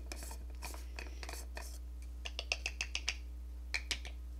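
Handling of a makeup powder container and brush: soft scratching and rubbing, then a quick run of about half a dozen light clicks, with two more near the end.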